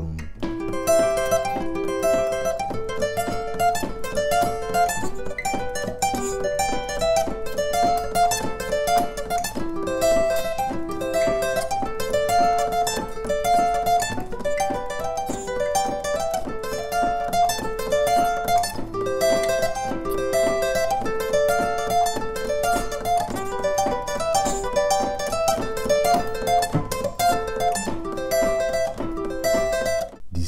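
Steel-string acoustic guitar played with a pick: fast alternate-picked arpeggios, a rapid run of single notes that repeats the same stepping pattern over and over, in the style of a Congolese seben lead-guitar speed exercise.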